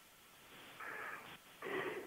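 Two short, faint breaths heard over a telephone line, thin and muffled, the first about half a second in and the second near the end.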